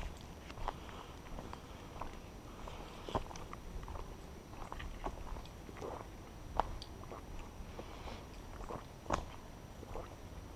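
Footsteps of a hiker walking on a forest dirt trail, crunching leaf litter and twigs underfoot in an irregular run of crackles, the sharpest snaps about three, six and a half and nine seconds in.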